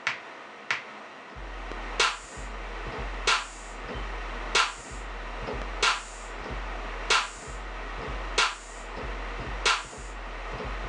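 Beat playback: a sharp clap-like drum-machine hit about every 1.3 seconds, joined after about a second and a half by a deep 808 bass line played on the keyboard, its long held notes breaking briefly at each hit.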